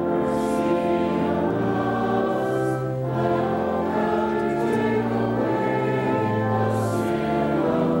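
Congregation singing a slow liturgical song with organ accompaniment, in long held chords that change every second or two.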